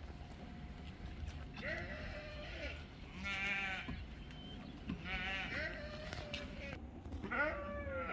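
Sheep in a grazing flock bleating: about four wavering bleats one after another, each a second or so long.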